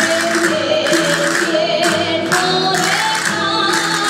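Live Aragonese jota played by a rondalla of plucked string instruments, with singing over it.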